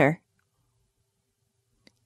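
The last syllable of a woman's spoken sentence, then near silence in the pause between recorded sentences, with one faint click just before the next line begins.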